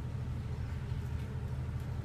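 A steady low rumble with a faint hiss above it, even throughout, with no distinct events.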